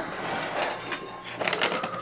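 Soft rustling and crinkling of a plastic bag of dry polymer crystals being handled, growing busier in the second half.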